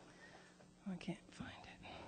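Faint hushed speech: a few quiet, whispered words about a second in.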